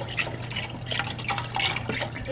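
Chicken broth bubbling and sizzling in a hot pot of sautéed vegetables, with irregular small pops and crackles over a steady low hum.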